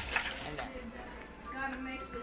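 Faint sizzling of hot oil frying, with a faint voice in the background from about a second and a half in.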